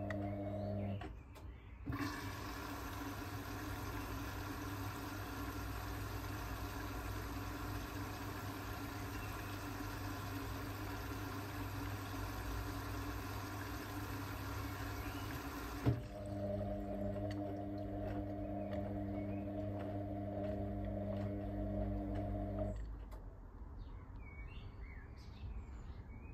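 Indesit IWB washing machine mid-wash: the drum motor whines steadily as it tumbles the load, then, about two seconds in, a long hiss of water filling the drum. The fill ends with a sharp click at about sixteen seconds, the motor whine returns for several seconds, and the machine goes quieter between tumbles near the end.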